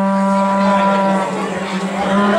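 A horn blown on one steady held note that fades out about a second and a half in, over a steady low hum.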